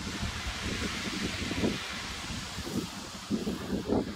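Strong wind gusting across the microphone in low rumbles, over a steady rushing of wind and sea surf.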